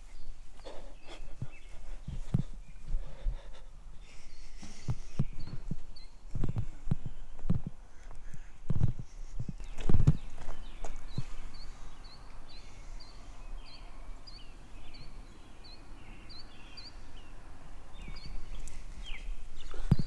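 Footsteps walking, irregular through the first half. From about five seconds in, a bird repeats short, high, falling chirps about twice a second.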